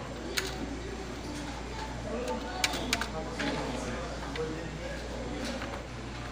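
A few sharp, separate clicks of keys being pressed on a radiotelex terminal keyboard, over a steady low hum and faint voices in the background.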